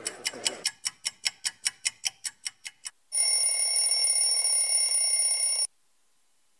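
Sound effects of an animated logo ident: a run of quick ticks, about six a second, growing fainter, then a steady high ringing of several held tones for about two and a half seconds that cuts off suddenly.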